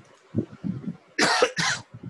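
A person coughing twice, two short harsh coughs in quick succession about a second in.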